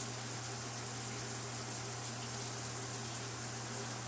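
Steady background hiss with a low, even hum underneath, and no other event.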